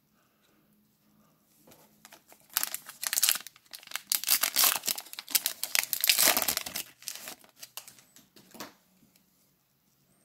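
Wrapper of a Stadium Club Chrome baseball card pack being torn open and crinkled in the hands. The crinkling starts about two seconds in, is densest in the middle, and fades out about a second before the end.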